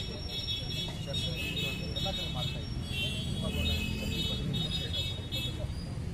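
Street traffic running steadily behind the voices of a gathered crowd, with a high broken ringing tone coming and going throughout.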